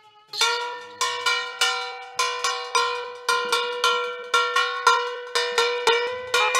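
A plucked folk string instrument playing a repeated rhythmic figure of sharp, quickly decaying notes, about two to three a second, over a steady ringing drone note. It starts after a brief pause right at the beginning.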